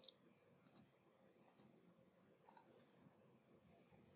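Faint computer mouse clicks: four quick pairs of sharp clicks about a second apart, placing points for lines in a CAD sketch.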